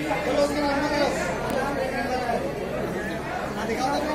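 Indistinct chatter of several people talking at once, with no clear words.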